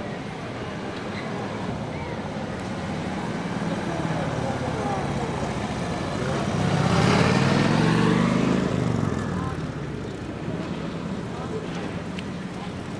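Street traffic, with a motor vehicle passing close: its engine hum builds to the loudest point about seven to eight seconds in, then fades away.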